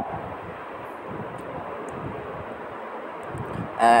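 Steady hiss of background noise picked up by the microphone, even and unbroken.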